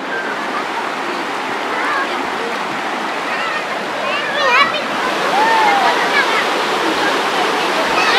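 Steady rush of river water running over rocks in a shallow rapid, with voices of people in the water calling out over it, most clearly about four to six seconds in.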